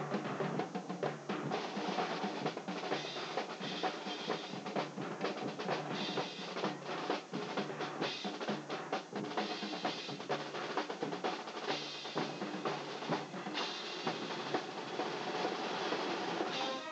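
School marching band playing a drum-heavy passage, with dense, rapid drum strokes over the sound of the full band.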